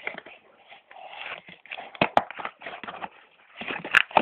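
Rustling and crinkling of the plastic and card packaging of a soft-tipped baby spoon as it is handled and opened, with two sharp clicks close together about two seconds in.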